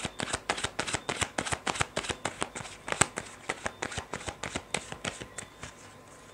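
A deck of tarot cards being shuffled by hand: a quick, fairly even run of card flicks, about seven a second, that stops shortly before the end.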